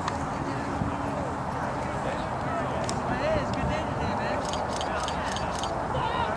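Distant shouted calls of rugby players around a lineout, too far off to make out, over a steady low rumble of wind on the microphone. A quick run of faint clicks comes near the end.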